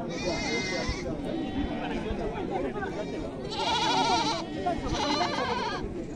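Goats bleating: three quavering calls, each under a second long, one at the start and two close together in the second half, over a steady babble of crowd chatter.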